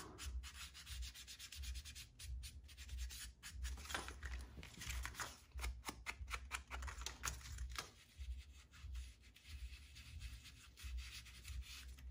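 Faint, quick, irregular scrubbing strokes of a foam ink blending tool rubbed along the edges of a painted paper piece, distressing the edges with ink.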